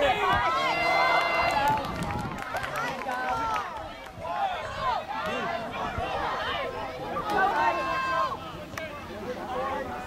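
Many voices shouting and calling out at once over an outdoor soccer game, overlapping with no clear words. There are longer, drawn-out shouts about a second in and again around eight seconds.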